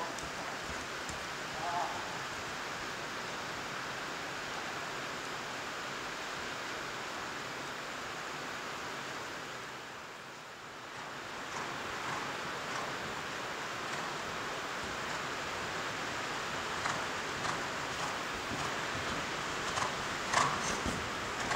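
Heavy rain pouring onto the metal roof of an indoor riding arena, heard from inside as a steady hiss that dips briefly about halfway through.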